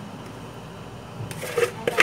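Spatula scraping cake batter out of a plastic mixing bowl into a metal baking pan: soft scraping, with a few sharper clicks of the spatula against the bowl's rim in the second half.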